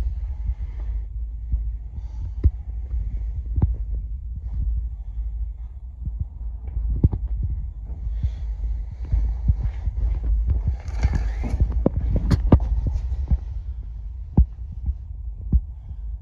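Handling noise from a handheld phone being moved around: irregular soft knocks and rustles over a steady low hum.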